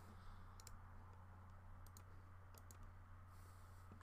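Faint computer mouse clicks, a few in quick pairs, over a low steady hum.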